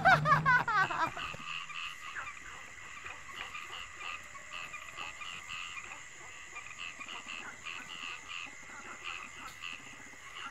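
Night-time chorus of frogs croaking, rapid short calls repeating over a steady background, after laughter that trails off in the first second or so.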